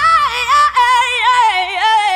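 A female singing voice holds the song's closing note with vibrato, then winds down through a descending run with the beat stopped, fading out near the end.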